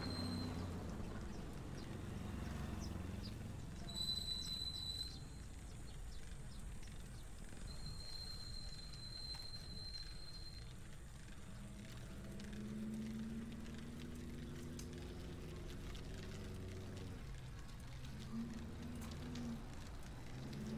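Faint low rumble of wind and road noise from road bikes climbing slowly. Two brief high, steady whistles come through, one about four seconds in and a longer one at around eight to ten seconds.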